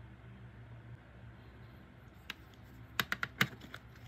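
Light clicks and taps of small plastic model-kit parts and a paintbrush being handled and set down on a hobby bench, a quick run of about six clicks near the end, over a faint low hum.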